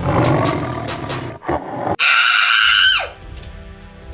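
A tiger roar sound effect over background music. About halfway through it cuts off sharply to a bright whistle-like tone that holds for about a second, then slides steeply down in pitch, leaving quieter music.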